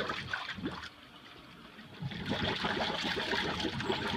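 Jetting water and loosened scale running out of a cast iron sewer through a jetter tool and its discharge hose. The flow eases off about a second in and picks back up about two seconds in.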